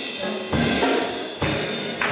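Drum kit playing the close of a song: two loud hits about a second apart, each left to ring out.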